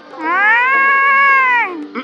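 A single long meow-like call that rises and then falls in pitch, lasting about a second and a half.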